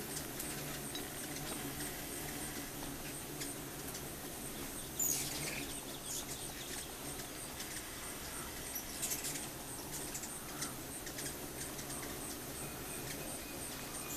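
A swarm of hummingbirds at feeders: a steady hum of wings under scattered high, squeaky chip calls. A sharp squeal sweeps downward about five seconds in, and a flurry of chips comes near nine seconds.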